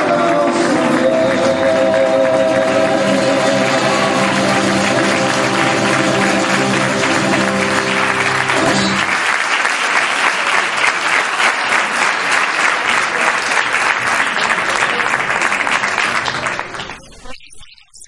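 Flamenco-style music ending on a long held final chord while an audience applauds over it; about nine seconds in the music stops and the applause carries on alone until it cuts off suddenly near the end.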